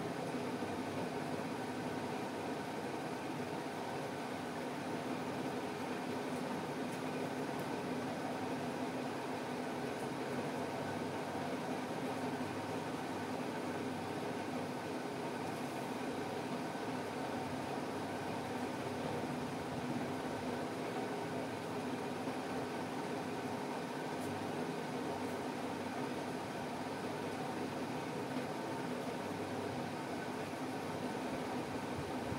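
Steady mechanical hum and hiss that does not change.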